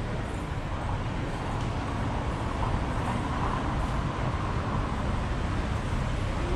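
Steady street traffic noise from cars passing on the road, mostly a deep, even rumble with no sharp events.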